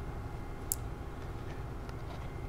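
Quiet steady room hum with one light, sharp click about a third of the way in and a fainter tick near the end.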